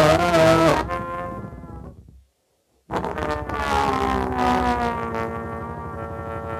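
Amplified glass played with the mouth: loud, moaning pitched tones that bend and slide. It cuts to silence about two seconds in, then starts again and settles into a steadier held tone that slowly fades.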